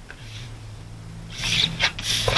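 Scrapbooking paper being handled and slid across a cutting mat: quiet at first, then a rustling scrape of paper on the mat in the second second, with a faint low hum underneath.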